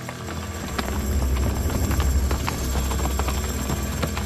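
The hooves of many horses clattering on hard ground as a mounted troop moves off. A deep rumble swells about a second in and eases near the end.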